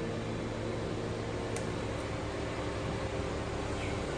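Audi A5 S Line's engine idling with a steady low hum while the car is edged out of a tight parking spot.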